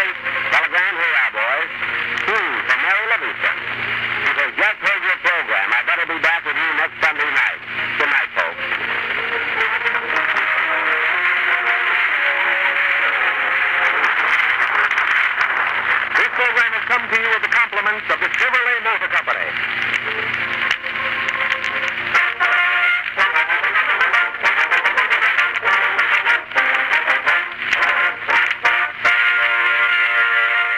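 Band music from an old 1930s radio broadcast, with a voice among it. The sound is thin, with nothing above the upper midrange, like an old transcription recording.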